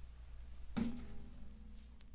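A low steady hum from the old recording, then about three quarters of a second in a single sudden struck note or knock that rings on at a low pitch and fades.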